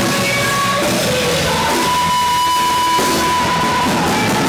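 Live rock band playing: electric guitars and bass with female vocals, and one long held high note through the second half.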